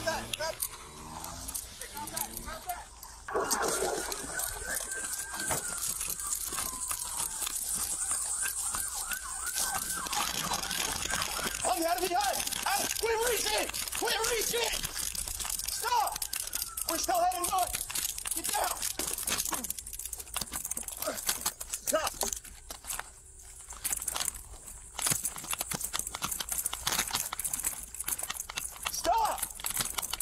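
Police body-camera audio of a chase: a siren wailing up and down from a few seconds in, then officers' voices, with steady knocking and rustling on the body-worn microphone as the officer runs.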